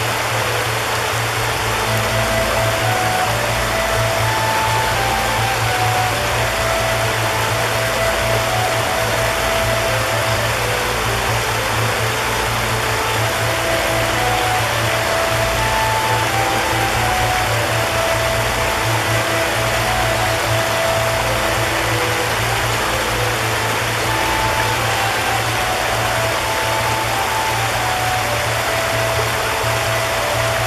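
Shallow rocky stream rushing over stones in small cascades, a steady, unbroken rush of water. Slow, soft music with long held notes that move gently from pitch to pitch runs over it.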